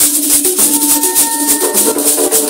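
Net-covered gourd rattles (sasa) shaken in a steady rhythm, with voices holding a low sung note beneath them.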